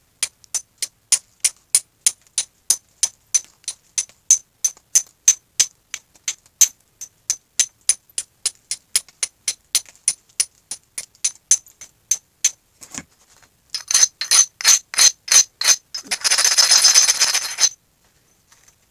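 Short scraping strokes against a coarse abrading stone in flint knapping, about three a second and evenly spaced. Near the end the strokes come quicker, then give way to one steady rub lasting about a second and a half.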